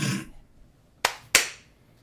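Two sharp hand claps about a third of a second apart, each with a short ring of room echo.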